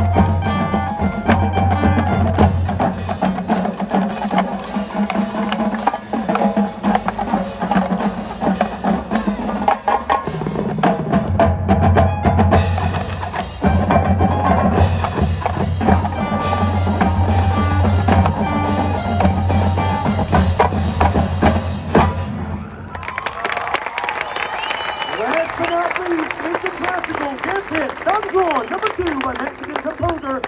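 Marching band playing a piece with brass and percussion and a strong, steady bass. The music stops about 23 seconds in, and crowd cheering and applause follow.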